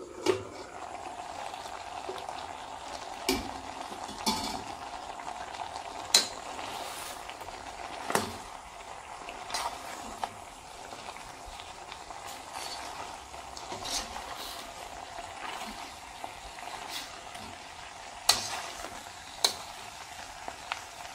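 Breadfruit curry sizzling and simmering in a stainless steel pot while a metal spoon stirs it, clinking and scraping against the pot every few seconds.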